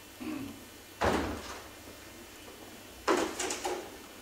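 A door shutting with a single sharp thump about a second in, followed near the end by a short run of clicks and knocks.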